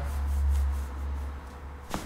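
Low steady hum with a single sharp click near the end, as the patient's leg is pulled in a hip-and-ankle traction manipulation.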